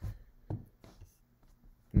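A few light, scattered taps and clicks of a stylus on a drawing tablet while writing on a digital whiteboard.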